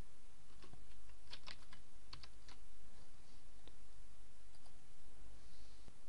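Computer keyboard typing: a short run of keystrokes in the first two and a half seconds, then a few isolated clicks, over a low steady hum.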